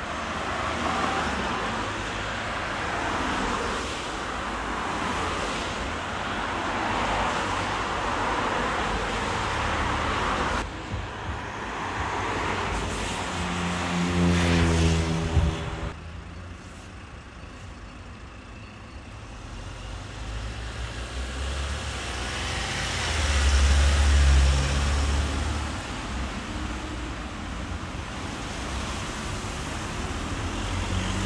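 Road traffic: a steady rush of passing cars, with a vehicle engine's hum swelling near the middle and a loud low rumble of another vehicle going by later on. The sound drops suddenly about halfway through, where the recording cuts.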